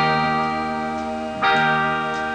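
Live band with trumpet and saxophone holding sustained chords between sung lines, a new chord struck about a second and a half in.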